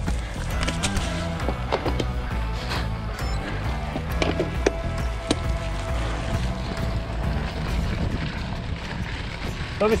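Mountain bike rolling over a leaf-covered dirt trail, with wind rumbling on the camera microphone and frequent sharp clicks and rattles from the bike.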